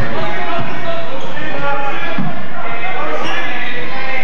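A basketball being dribbled on a gym's hardwood floor during play, amid voices of players and spectators, echoing in the large hall.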